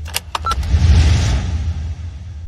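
Loud rumbling, hissing sound effect accompanying an animated logo, with a few sharp clicks and a brief high beep about half a second in.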